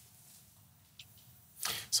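Near silence, with one faint click about a second in and a short hiss near the end, just before a man starts speaking.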